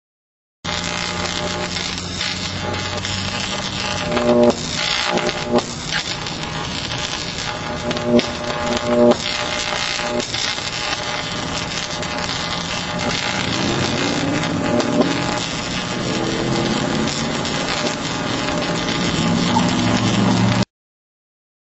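A 10 kV overhead-line insulator arcing through broken-down insulation: a continuous loud, harsh electrical noise that begins about half a second in. It surges louder around four to five seconds in and again around eight to nine seconds in, then cuts off abruptly at the end.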